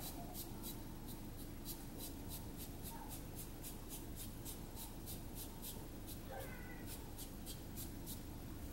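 Faint, soft strokes of a foam brush dabbing acrylic paint onto a craft-foam stamp, about three a second. A brief faint high-pitched call sounds about six and a half seconds in.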